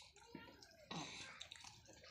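Near silence: faint room tone with a small click and a brief soft sound about a second in.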